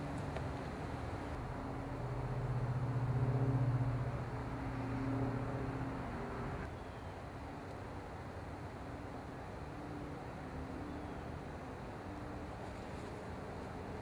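A distant engine humming steadily in one low tone, swelling a couple of seconds in and fading by about six seconds, over faint outdoor background noise.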